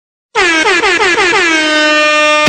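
Air horn sound effect: after a brief silence, a quick run of stuttering blasts that merge into one long held blast.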